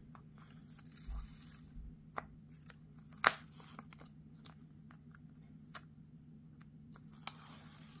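Quiet paper handling: the white backing being peeled off a sticky craft mat, with scattered light clicks and one sharper click about three seconds in, over a low steady hum.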